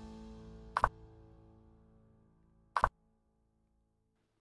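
Two short, sharp piece-move click sounds from chess replay software, about two seconds apart, each marking a move played on the digital board. Under them, soft sustained background music fades out and is gone about three seconds in.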